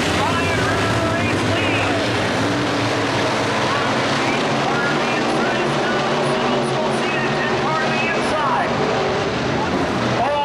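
A pack of dirt-track modified race cars running at speed, their V8 engines making a steady wall of noise, with pitch rising and falling as cars pass.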